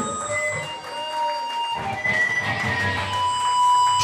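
Electric guitar through an amp left ringing between songs: several held feedback tones, one swelling louder near the end, with a few stray notes and no drums.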